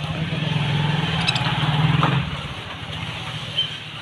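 A low, steady engine-like hum, loudest in the first two seconds and then easing off, with a faint bird chirp near the end.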